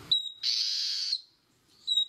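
Ochre-rumped antbird song: a short high whistled note followed by a longer buzzy, wheezy note, given twice.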